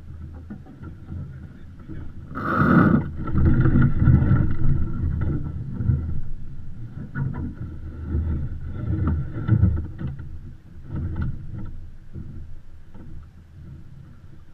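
Water washing and sloshing against the hull of a Beneteau First 337 sailing yacht under way, with a sharp splash about two and a half seconds in. The rushing is loudest for several seconds after the splash, then dies down near the end.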